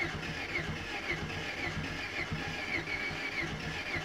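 Renault Clio petrol engine being cranked on the starter motor without catching, turning over in an even chugging rhythm of about three beats a second with a short squeak on each beat. The engine has weak, uneven compression and is not expected to start.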